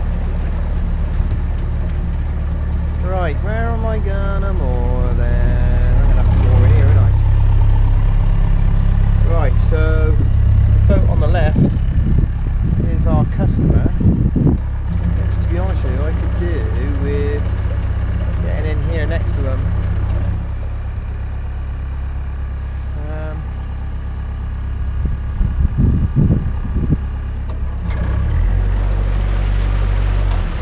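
Narrowboat's diesel engine running steadily under way. It grows louder through the middle, is throttled back about two-thirds of the way in, and opens up again near the end.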